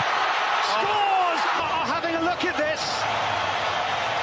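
A football commentator's voice calling the play over the steady noise of a stadium crowd.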